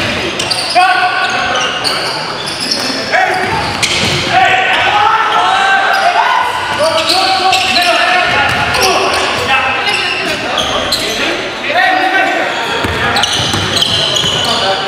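A basketball being dribbled on a hardwood gym floor during live play, with players' voices calling out. The sound echoes in a large hall.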